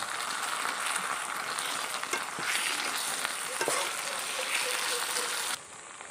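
Onions and ginger-garlic paste sizzling in hot oil in a metal pot as a metal spatula stirs them, with a few light scrapes of the spatula. The sizzle drops sharply near the end.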